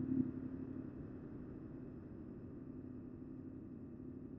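Faint, steady low rumble of a Yamaha MT-07's parallel-twin engine idling with the clutch pulled in as the bike coasts slowly and slows down. It eases off a little in the first second, then holds steady.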